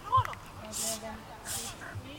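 An agility handler's voice calling short commands to her dog during a run. A sharp pitched call comes just after the start, followed by three short hissing sounds.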